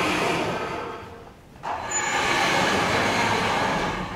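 Sliding chalkboard panels being moved along their runners: two rumbling runs, the first ending about a second in and the second starting about a second and a half in and running longer.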